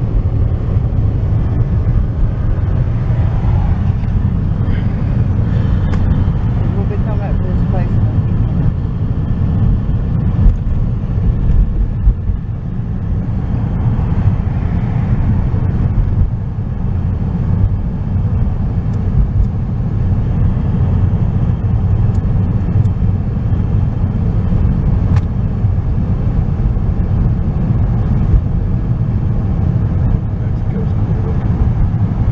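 Steady low rumble of a car driving, engine and tyre noise heard from inside the cabin.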